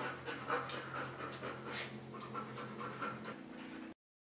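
A husky panting quickly, a few breaths a second, cutting off suddenly near the end.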